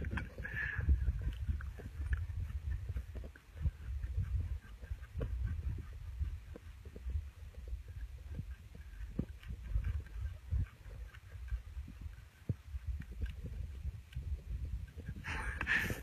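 Faint scuffling of a man wrestling a buck deer held by its antlers on hay-covered ground: scattered soft thumps and scuffs over an uneven low rumble.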